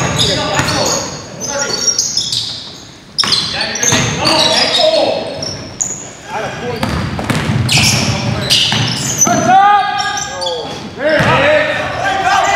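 Live basketball game audio in a large gym: the ball bouncing on the hardwood floor amid players' shouts, with the echo of a big hall.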